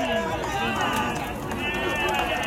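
Players' voices calling out across a baseball field, with several long, drawn-out yells overlapping.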